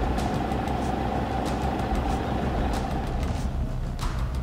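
A vehicle engine idling: a steady low rumble with a steady higher whine that stops shortly before the end.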